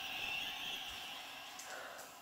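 Faint steady hiss that slowly fades away: background noise with no distinct sound event.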